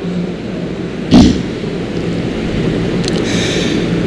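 A pause in a live recitation amplified through a PA system: a steady low rumble and hiss from the open microphone and hall, broken about a second in by one short, loud thump on or into the microphone.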